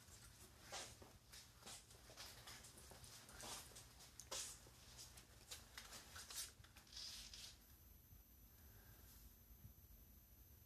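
Near silence with faint scattered rustling and handling noises. Near the end a faint steady high whine sets in.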